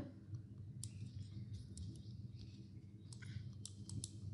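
Faint, scattered computer mouse clicks, several spaced out over a few seconds, over a low steady hum.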